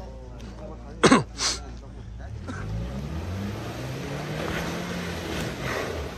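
Tank 300 SUV engine revving up under load, its note rising from about two seconds in, as it climbs a steep dirt slope. About a second in, a man coughs twice, the loudest sounds.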